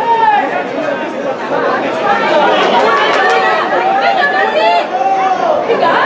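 Several voices shouting and calling out over one another on a football pitch during play, without a single clear speaker.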